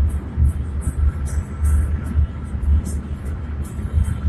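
Low, uneven rumble of a car on the move, heard from inside the cabin.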